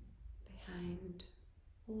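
A woman speaking softly and slowly, guiding a meditation, over a low steady hum.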